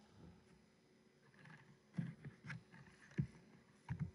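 Faint scattered knocks and clicks, a handful of them from about two seconds in, like small handling noises at a desk close to the microphone.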